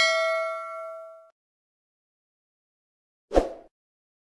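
A notification-bell 'ding' sound effect, played as the cursor clicks the bell icon: one bright metallic ring that fades out over about a second. About three seconds later comes a short soft thump.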